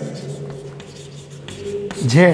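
Chalk scratching and tapping on a blackboard as a line of writing goes on, in short irregular strokes, with a faint steady hum underneath.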